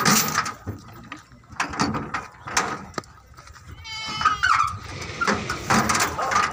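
A short, high-pitched animal call about four seconds in, among scattered knocks and clatter around livestock on a truck bed.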